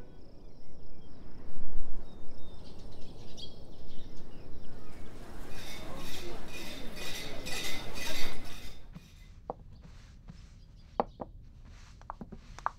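Outdoor ambience with birds chirping, rising to a dense chatter of birds that cuts off abruptly about nine seconds in. After that, a few light clinks of plates and cutlery.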